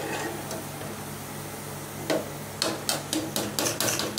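A perforated steel ladle stirring in an aluminium cooking pot, scraping and knocking against the metal, with a run of quick clinks in the second half.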